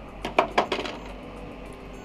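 A quick run of small, sharp clicks in the first second as the projector is handled and switched on. After that, a faint steady hum as the old projector starts up.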